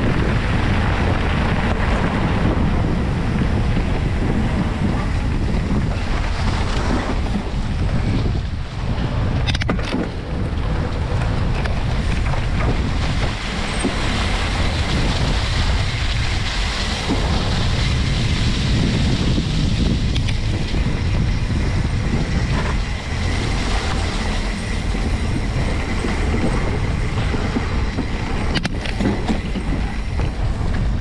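Wind buffeting the microphone of a camera riding on a moving bicycle, over the rumble and rattle of its tyres on gravel and a leaf-covered dirt trail, with a few sharp knocks about a third of the way in and near the end.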